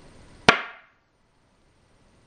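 A black go stone snapped down once onto a wooden go board: one sharp click with a short ringing tail.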